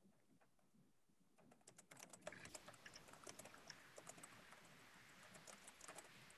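Faint, rapid, irregular clicks and rustling picked up by a video-call microphone, starting about a second and a half in.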